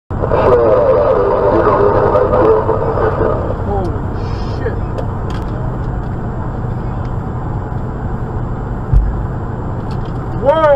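Steady road and engine drone inside a moving vehicle's cab, with a single low thump about nine seconds in.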